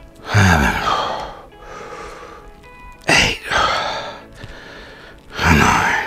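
A man breathing forcefully while doing dumbbell curls: three loud exhales, roughly one every two and a half seconds, one with each rep, over background music.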